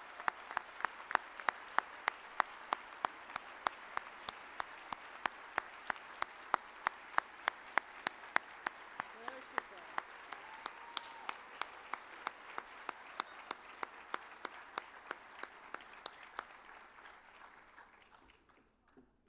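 Audience applauding. One nearby pair of hands claps loudly and evenly, about three claps a second, above the general applause. The applause dies away near the end.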